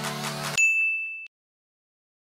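Electronic background music cuts off abruptly, and a single high ding sound effect rings for under a second, then stops sharply into silence.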